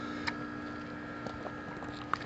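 Quiet background with a steady faint hum and a few small faint clicks; no shot is fired.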